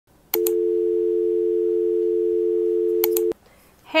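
A steady electronic two-note tone, like a telephone dial tone, held for about three seconds. Two short clicks come just as it starts and two more just before it cuts off.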